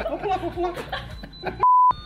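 Voices and laughter, then near the end a short, loud, single steady electronic bleep with all other sound cut out around it: a censor bleep edited over a word.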